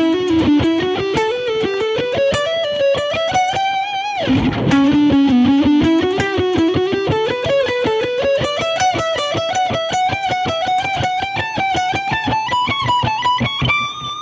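Ibanez Universe seven-string electric guitar playing two fast climbing scale runs built from repeating note sequences. The first run rises for about four seconds. After a brief low burst, the second climbs more slowly and ends on a held high note.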